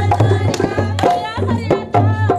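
Punjabi giddha folk music: women clapping in rhythm and a hand drum beating, with women's voices singing boliyan in the second second.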